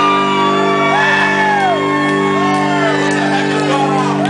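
Live rock band with a guitar chord held and ringing, under loud yelled vocals that swoop up and down in pitch.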